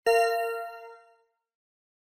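A single bell-like chime, struck once just after the start and ringing out over about a second. It is the cue tone that marks the end of one dialogue segment, signalling the interpreter to begin.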